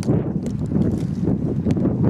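Wind buffeting the microphone in a steady low rumble, with a few sharp clinks of loose shale plates knocking together.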